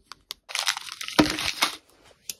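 Small clear plastic bag of clay beads crinkling as it is handled, starting about half a second in and lasting about a second and a half, with a few sharp clicks in the crinkle.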